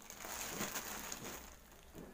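Plastic courier mailer bag crinkling as it is handled, for about a second and a half.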